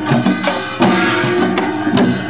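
Korean pungmul folk percussion playing, with janggu and buk drums struck in a quick rhythm over ringing tones. A loud hit comes just under a second in.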